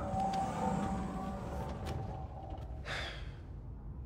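Film soundtrack: a sustained tone of a few held pitches that slowly dies away, then a short breathy whoosh about three seconds in.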